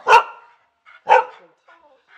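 Dog barking twice, about a second apart.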